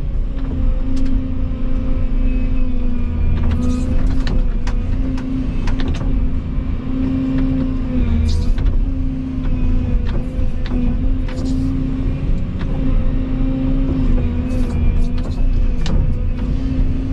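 Volvo EC220E excavator's diesel engine running steadily, heard from inside the cab, its pitch dipping briefly under load as the hydraulics work. Short bursts of hiss and scattered knocks come through as the bucket digs into the soil.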